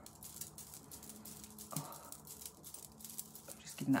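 Hands fanning the face to dry freshly applied make-up setting spray. It sounds like faint, quick swishes and ticks of air and skin movement close to the microphone.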